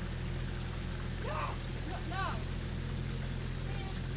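A motor running steadily at an even low pitch, with a person shouting "No! No! No!" over it about a second in.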